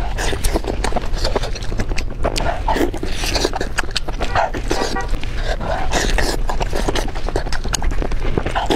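Biting into and chewing a large piece of roasted pork close to the microphone: many quick, irregular clicks and mouth sounds of chewing.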